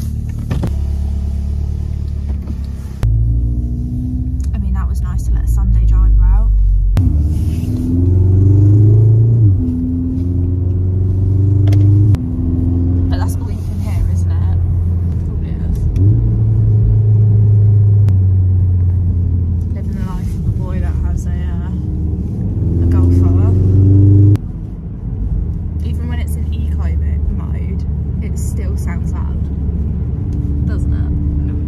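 Car cabin noise while driving: a steady low engine and road rumble, with the engine note climbing in pitch several times as the car accelerates. The sound jumps abruptly every few seconds.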